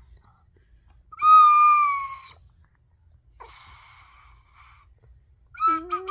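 Toy flute blown by a toddler: one loud steady note about a second long, dropping slightly in pitch as his breath gives out, then a weaker, breathier note a couple of seconds later.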